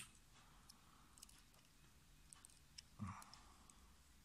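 Near silence with a few faint clicks as a small screwdriver turns out a post screw on a rebuildable tank atomizer deck, and one short soft sound about three seconds in.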